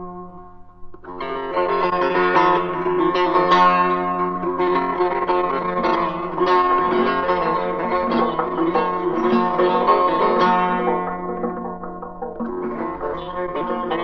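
Solo Persian plucked lute playing a melody in the Bayat-e Esfahan mode: a held note dies away, then a quick run of plucked notes begins about a second in and carries on, easing briefly near the end before picking up again.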